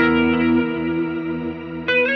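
Electric guitar played through the Crazy Tube Circuits Sidekick Jr. reverb/delay/chorus pedal. A chord struck right at the start rings out with a long, effect-washed sustain, and a second chord is struck near the end.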